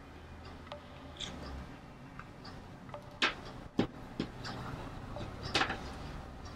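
Quiet handling sounds of pinning cotton curtain tape onto a jersey t-shirt: light ticks of pins, short rustles of fabric and tape about three and five and a half seconds in, and a sharp click just before four seconds.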